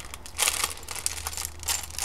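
Plastic packaging crinkling and rustling in a run of short, irregular crackles as small accessories are handled.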